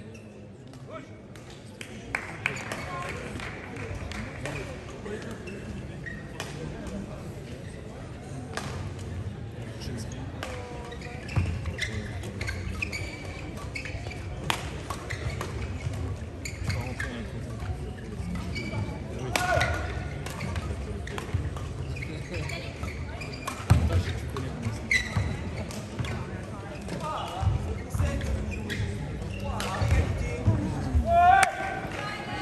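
Badminton rackets striking a shuttlecock again and again in a fast mixed-doubles rally: sharp, irregular hits mixed with players' quick footwork on the court, in a large, echoing sports hall.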